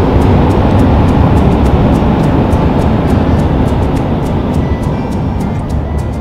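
Steady road and engine noise of a moving car, heard from inside the cabin, under background music with a quick steady beat. The car noise fades down toward the end.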